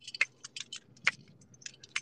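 A quick, irregular run of small clicks and ticks, about a dozen over two seconds, with no steady sound beneath them.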